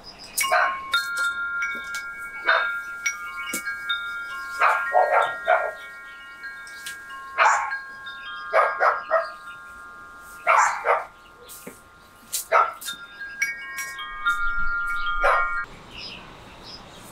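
A metal-tube wind chime being struck again and again at irregular intervals, about ten times, its tubes ringing on in several steady overlapping tones.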